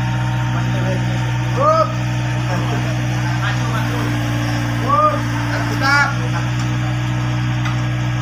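Diesel engine of a Komatsu mini excavator running steadily, holding its boom while an engine hangs from the bucket on chains. Three short high calls rise and fall over it, about two seconds in and twice near the end.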